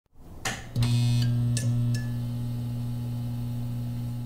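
Neon-sign sound effect for a logo intro: a few sharp clicks and crackles in the first two seconds as it flickers on, then a steady electrical hum.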